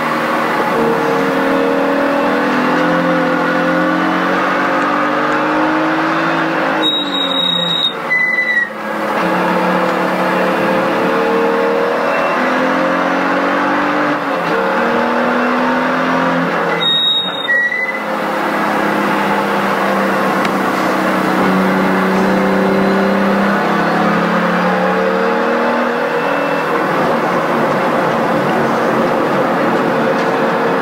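A 2018 BMW M2's turbocharged inline-six running hard on track, heard from inside the cabin. Its pitch climbs in repeated runs and steps down between them as it changes gear, with two short lulls where it drops off, about seven and seventeen seconds in.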